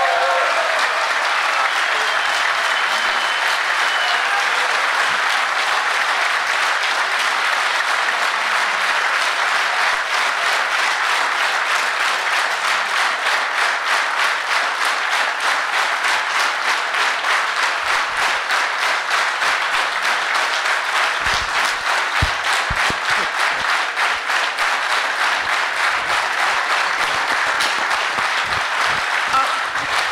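A large audience applauding steadily. In the second half the clapping falls into a regular rhythm, the crowd clapping in unison.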